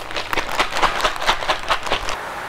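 Ice cubes and rock salt rattling inside a plastic zipper bag shaken rapidly by hand, about five or six jolts a second. The salted ice is being shaken to chill a bag of milk inside it into ice cream.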